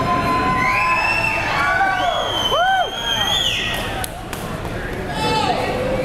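Concert crowd cheering between songs, with high whoops and whistles sliding up and down over the din.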